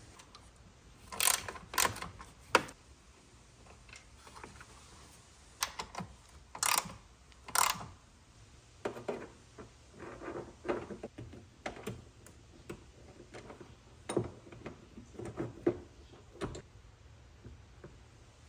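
Irregular small metal clicks, taps and short scrapes as screws and a hood-strut bracket are handled and driven in with an Allen key.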